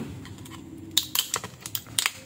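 A thin metal tool prying at the glued seam of a plastic laptop battery pack casing: a quiet scrape at first, then a quick run of sharp plastic clicks and snaps from about a second in.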